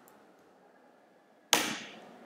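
A single sharp, loud key tap about one and a half seconds in, fading quickly: a computer keyboard key struck hard to enter a spreadsheet cell. A couple of faint key clicks come before it.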